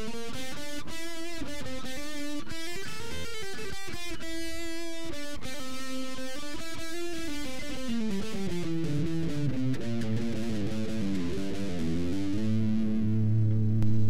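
Electric guitar playing a single-note scale run in A Phrygian mode. The notes climb step by step, turn about halfway through and come back down, ending on a low note held for the last second or so.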